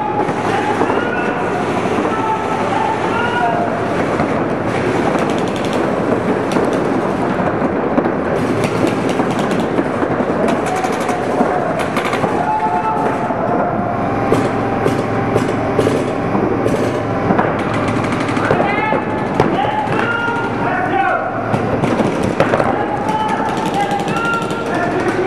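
Paintball markers firing rapid strings of shots, a dense crackle of pops that keeps up throughout and is thickest in the middle. Voices shout over it.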